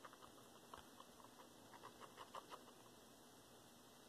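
Near silence: room tone with a scatter of faint, light clicks in the first two and a half seconds.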